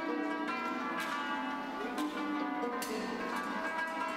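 Many-stringed zither played slowly, each note ringing on with a long, bell-like sustain; sharper notes sound about one, two and nearly three seconds in over lower held tones.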